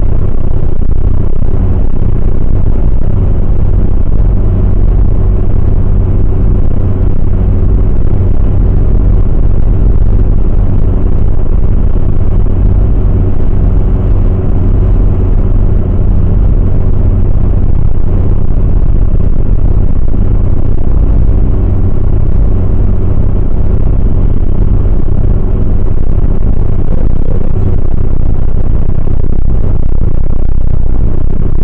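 Loud, steady low rumble of a car's engine and tyres at motorway cruising speed, heard inside the cabin, with a constant low hum running through it.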